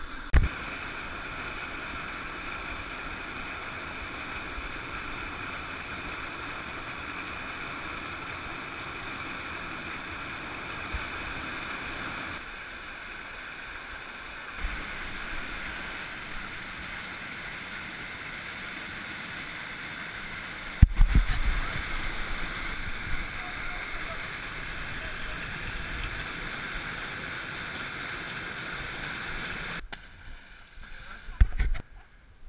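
Rapids of a river rushing through a rocky gorge: a steady white-water roar. A few dull thumps break through it, one just after the start and the loudest about twenty-one seconds in.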